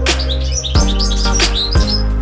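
A Eurasian siskin twittering a quick run of short, high chirps over background music with a steady beat and drum hits.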